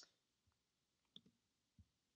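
Near silence with a few faint clicks of a computer mouse, spaced well apart.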